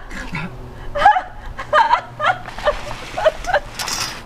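Short, gasping sobs from a person under threat, about two a second.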